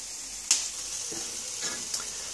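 Fish, prawns and vegetables sizzling on a grill over glowing embers, a steady hiss, with one sharp click about half a second in.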